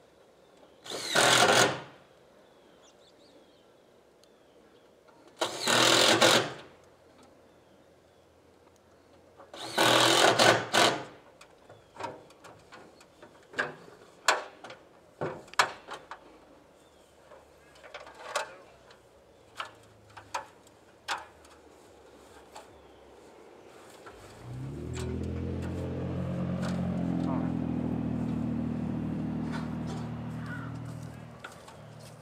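Three loud noisy bursts about a second long each, then a string of sharp clicks and taps. From about three-quarters of the way in, an engine starts up and runs steadily.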